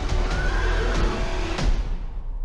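Film trailer soundtrack: a horse whinnies once over a loud, steady music score, and the sound thins out near the end.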